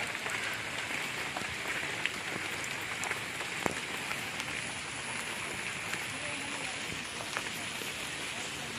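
Steady hiss of light rain falling on palm foliage and a wet path, with a few scattered drip ticks.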